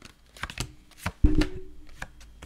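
A small Rider-Waite tarot deck being shuffled by hand: a run of short, crisp card clicks, with one heavier thump about a second and a quarter in.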